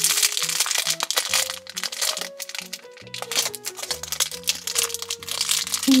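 A thin plastic toy wrapper crinkling and tearing in repeated bursts as it is pulled open by hand, over light background music.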